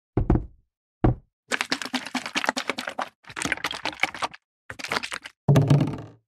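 Plastic bottle being knocked and dropped: two single knocks in the first second, then several runs of rapid clattering hits, and a heavier thunk near the end.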